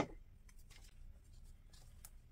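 A single sharp knock at the start, then faint paper rustling and rubbing as a glued paper cutout is set on a journal page and pressed flat with the fingertips.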